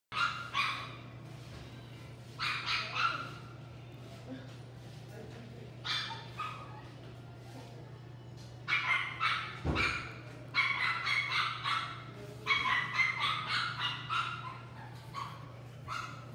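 Young Chihuahua–toy poodle mix puppy giving high, thin yips and whimpers in short clusters of several at a time, growing more frequent through the second half, over a steady low electrical hum. A dull thump a little under ten seconds in.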